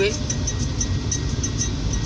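Steady low rumble of a car heard from inside its cabin, with no other clear event.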